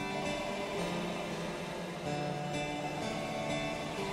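A plucked, guitar-like part playing through Phonolyth Cascade's diffusion reverb, its notes smeared into a steady wash of overlapping sustained tones. The reverb's Spread control is being swept down and back up with Inertia at zero, so the change in spacing between the diffusion stages comes through without lag.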